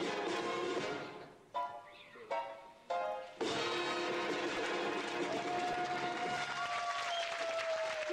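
Big band closing a jazz arrangement: the playing fades, then three short ensemble chord stabs are followed by a loud final chord about three and a half seconds in. Audience applause starts under it, and a single long held note sounds over the applause and slides down near the end.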